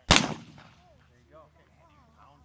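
A single shotgun shot, fired once near the start, its report trailing off over about half a second.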